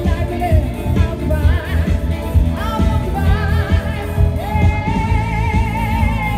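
A live pop band playing through a PA: a singer holding long notes with vibrato over keyboard, electric guitar and a heavy bass with a steady beat.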